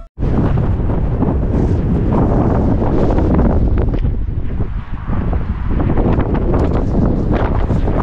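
Wind blowing across the microphone: a loud, rough rumble that rises and falls with the gusts.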